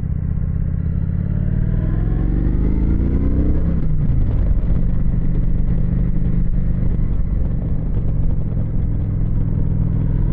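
Motorcycle engine pulling under acceleration, its pitch climbing for a couple of seconds and then dropping sharply about four seconds in at an upshift, then running steadily at cruising speed, with wind noise from riding.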